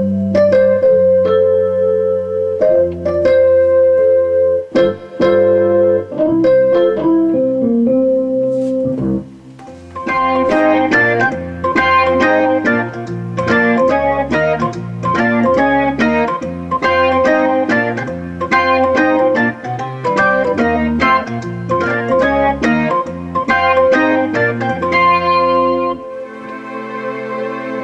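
Korg Triton Rack synthesizer module playing its 'Real EP & Pad' combination: electric piano chords over a sustained pad. After a short drop in level about nine seconds in, it moves to the 'Warm Bars' combination, a busier rhythmic pattern of quick notes.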